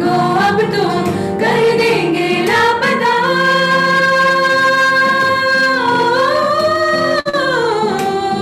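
Vocalists singing a pop ballad with keyboard and acoustic guitar accompaniment. They hold one long wordless note through the middle, which swells up and then falls away near the end.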